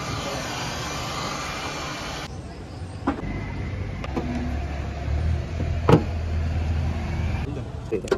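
Heat gun blower running with a steady hiss for the first two seconds. It gives way to a quieter low hum with two sharp clicks, about three and six seconds in.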